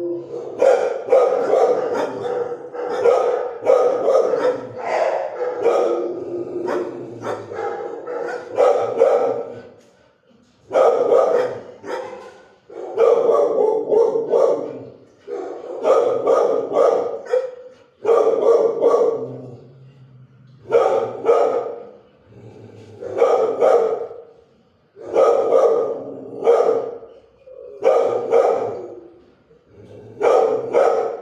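Shelter dogs in the kennels barking, nearly without pause for the first several seconds, then in bursts of a few barks every two to three seconds.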